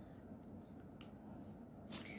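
Quiet room with two faint, small plastic clicks, about a second in and again near the end, from handling a plastic syringe and its needle cap.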